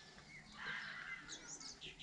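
Faint birds chirping: a scattering of short, high chirps and twitters.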